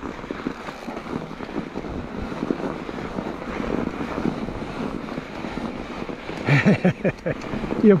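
Electric mountain bike grinding uphill through soft, deep snow: a steady crunching and churning of the tyres in the snow as the rider pedals hard with little headway. A short burst of the rider's voice comes near the end.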